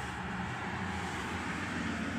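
Steady low rumble of outdoor street noise from road traffic.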